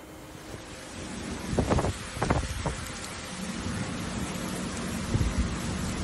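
Storm wind and heavy rain, the gusts buffeting the phone's microphone, with a few stronger gusts about one and a half to three seconds in.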